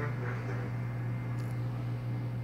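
Steady low hum in the room, with faint trailing sound from the television just at the start as its programme ends, and one brief click about a second and a half in.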